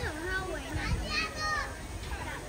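Children talking and calling out in bursts.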